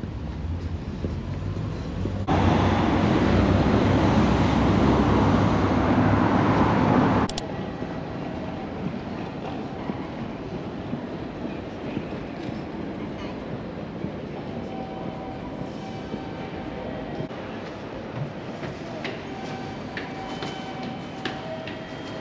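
Railway station sounds in short cuts: a loud, steady rush of a train running past for about five seconds, starting and stopping abruptly. Then a quieter station background follows, with faint voices and a few short tones and clicks near the end.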